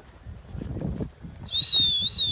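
Horse's hooves drumming on turf at a canter, a run of low dull thuds. About one and a half seconds in, a loud high whistle starts, its pitch wavering up and down.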